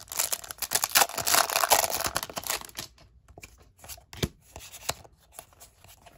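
A Pokémon booster pack's foil wrapper being torn open and crinkling for about three seconds, then softer rustles and a few light clicks as the cards are drawn out of the pack.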